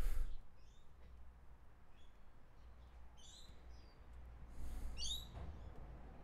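Scattered short, high bird chirps, about five of them, over a faint steady low rumble. A soft knock comes right at the start and a brief hiss a little before the five-second mark.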